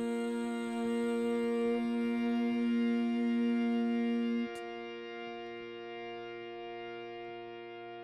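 Closing chord of a slow jazz ballad: a long held note stops sharply about halfway through, and the remaining chord, ringing like a sustained piano, slowly fades.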